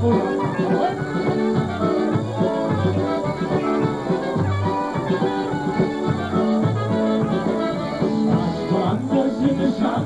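Live polka band playing an instrumental passage: a concertina and horns, including a trumpet, over a regular bass beat.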